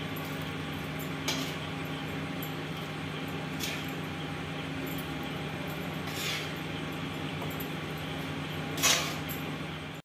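Spoon clinking and scraping four times as thick potato and pointed gourd curry is served into a glass bowl, the last clink the loudest, over a steady low hum.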